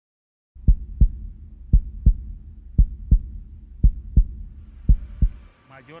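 Heartbeat sound effect: five slow, deep lub-dub double beats about a second apart over a low hum, starting about half a second in and stopping just before the end.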